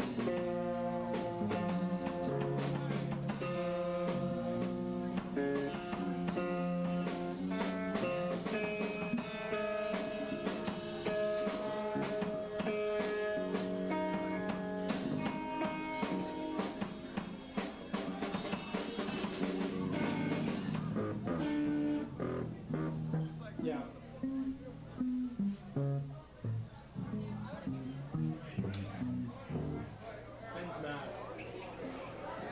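A live rock band plays loudly, with electric guitars and a drum kit, recorded on a camcorder's built-in microphone. About two-thirds of the way through the full band sound stops, leaving scattered single instrument notes and voices.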